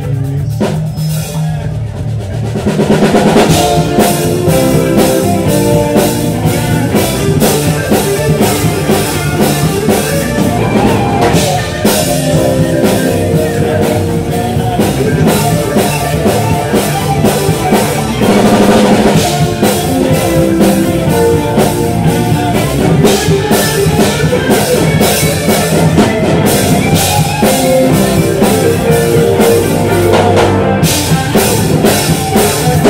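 Live band playing with drum kit and guitar, keeping a steady beat. It starts quieter, and the full band comes in louder about two and a half seconds in.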